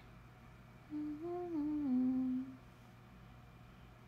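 A young woman humming a short phrase of a few notes that step up and then down in pitch, lasting about a second and a half from about a second in.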